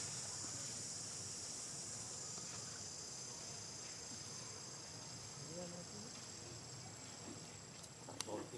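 Steady high-pitched drone of an insect chorus, easing slightly toward the end, with faint low voices now and then.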